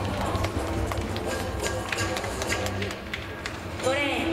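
Stadium ambience with background music over the public-address system, a steady low hum, and scattered sharp clicks.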